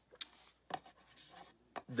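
Faint handling noise: light rubbing and scratching with three short, sharp clicks.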